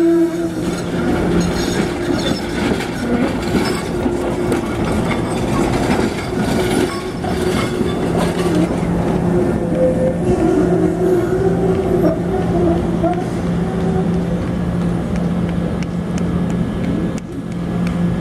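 SEPTA Kawasaki trolley running slowly past close by, with a steady electrical hum, wheels ticking over the rail joints, and wavering wheel squeal on the curve.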